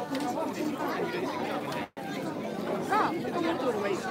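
Crowd chatter: many people talking at once in a packed shopping street. The sound cuts out completely for a split second about two seconds in, then returns.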